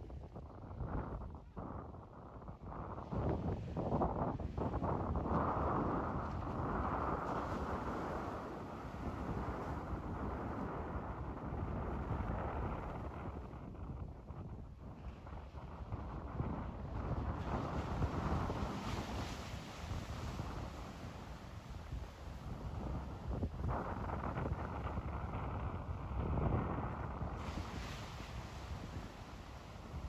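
Wind buffeting the microphone over surf breaking and washing onto a rocky shore, the noise swelling and easing every few seconds.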